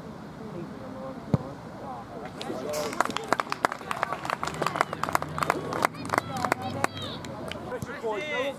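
A football kicked once, a sharp thud about a second and a half in, followed by distant shouts and calls from players and spectators over scattered knocks and clicks.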